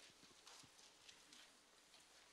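Near silence in a large hall, broken by a few faint knocks and shuffles of people moving about, such as footsteps and chairs.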